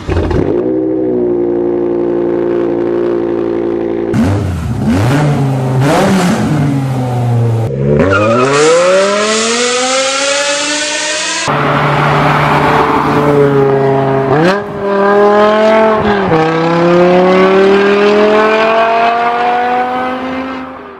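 BMW S85 5.0-litre V10 in a series of recordings: the M6's engine idling steadily after a cold start, then revs blipped sharply several times, then long full-throttle pulls with the pitch rising, including an M5 E60 with a GT Haus Meisterschaft exhaust.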